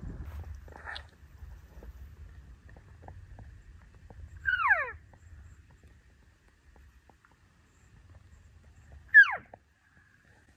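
Two short elk cow-call mews, each a quick squeal that slides steeply down in pitch, about four and a half seconds apart; the second, near the end, is louder and sharper. A faint low rumble runs beneath them.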